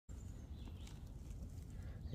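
Faint rustling and light crackles of dry pine needles and forest litter as a hand reaches in to pick a mushroom, over a low steady rumble.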